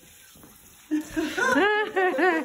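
A high-pitched voice in quick rising-and-falling calls, starting about a second in after a quiet first second.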